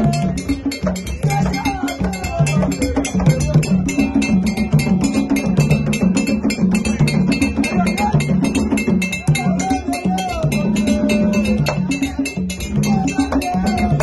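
Live drumming on large hide-headed barrel drums, which play a repeating low pattern under a fast, even tapping beat. Voices sing over it at times.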